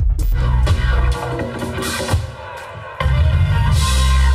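Live band playing electronic Latin dance music. The bass and kick drum drop out about a second in and come back in full about three seconds in.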